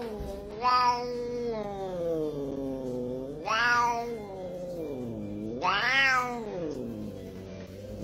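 A domestic cat yowling in long, drawn-out calls, three in a row, each rising briefly and then slowly falling in pitch. A sharp click comes at the very end.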